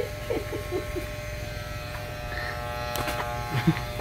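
Electric hair clippers running with a steady buzz during a haircut, with faint voices in the background.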